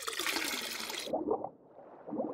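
Sound effect of beer being poured into a glass: a sharp fizzing hiss for about the first second, then a softer pouring sound.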